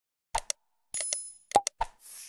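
Sound effects of an animated like-and-subscribe end screen: several sharp mouse-style clicks, a bell ding about a second in that rings for about half a second, and a short pop.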